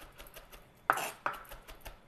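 Chef's knife mincing garlic cloves on a cutting board: a run of quick, light knife taps, the sharpest a little under a second in.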